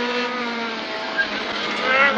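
Honda Civic rally car's engine under power, heard from inside the cabin: a steady engine note that eases slightly in pitch, with a brief knock a little over a second in and the engine getting louder near the end.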